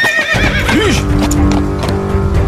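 A horse whinnies briefly at the start, its call wavering and falling in pitch. Loud dramatic film music with a deep low swell then comes in and carries on.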